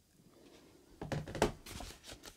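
A smartphone set down on a desk and a book and pages handled: a few short knocks and rustles starting about a second in.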